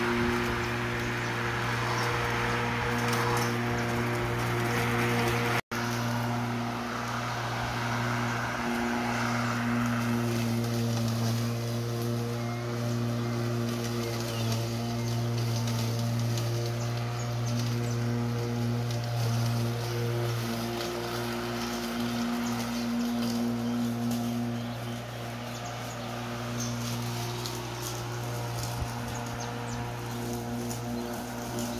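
Walk-behind rotary lawn mower running steadily as it is pushed through long grass, a constant humming drone that varies a little with the load; there is a brief break about five and a half seconds in.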